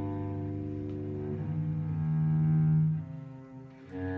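Cello and bass clarinet improvising together in long held notes, changing pitch every second or so. The loudest is a low note held near the middle, which dies away about three seconds in before new notes enter.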